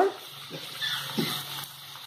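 Diced tomatoes cooking in an iron kadai, a faint sizzle over a low steady hum, with a brief faint whine about a second in.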